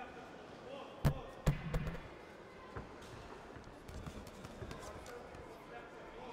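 Two sharp hits about a second in, half a second apart, then a short flurry of lighter ones: boxing gloves landing as two amateur boxers exchange punches at close range. Voices in the hall run underneath.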